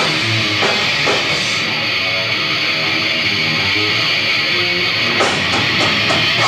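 Live metalcore band playing loud, with distorted electric guitars and a drum kit, recorded on a camcorder's built-in microphone. The cymbals drop away after about a second and a half, and the kit comes back in hard near the end.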